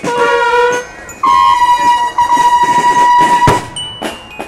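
School marching band's trumpets sounding a short held note, then after a brief break one long sustained note, ending with a drum hit.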